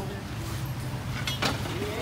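Street background: a steady low hum of traffic with faint voices, and a single sharp click about one and a half seconds in.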